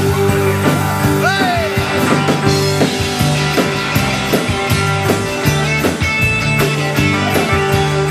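A live country band plays an instrumental passage with no singing: acoustic and electric guitars over bass and drums at a steady beat. A bent note rises and falls about a second in.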